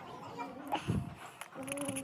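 A small shaggy dog vocalizing, its voice rising and falling in pitch, with a short louder sound about a second in.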